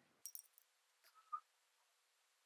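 Near silence, broken by a few faint light clicks near the start and one short clink a little past the middle.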